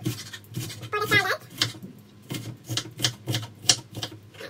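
Kitchen knife chopping a white onion on a wooden cutting board: sharp knocks of the blade against the board, a few scattered strokes at first, then a quick, even run of about five a second in the second half.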